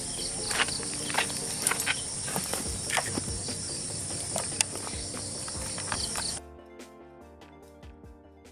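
Steady high-pitched chorus of crickets and other night insects, with scattered sharp clicks. About six seconds in it cuts off abruptly and music begins.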